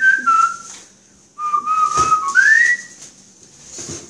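A person whistling a tune in clear single notes: a short falling run of notes, a brief pause, then a long held note that glides up at the end. One sharp knock, like an item set down, comes about two seconds in.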